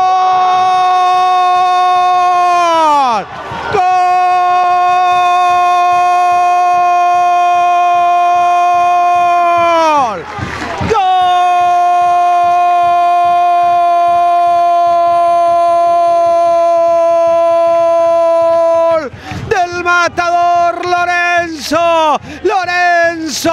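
Football commentator's drawn-out goal scream, a long "goool" held on one high pitch. It comes in three long breaths, each dropping in pitch at the end, then breaks into shorter excited shouts near the end.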